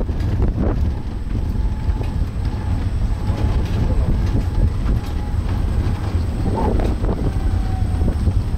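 Steady low rumble of an open-sided shuttle cart rolling along a paved path, with wind buffeting the microphone as it moves.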